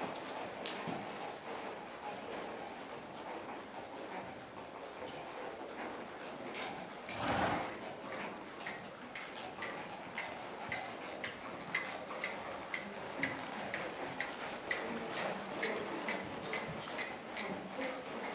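Ridden horse moving over arena footing, with light, evenly spaced ticks about twice a second. A brief loud burst of noise comes about seven seconds in.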